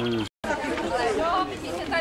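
Several people chatting outdoors in overlapping conversation. The sound drops out completely for a split second about a third of a second in, at an edit.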